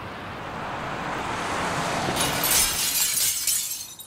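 A rising rush of noise that swells into a bright, crackling crash about two seconds in, then drops away just before the end.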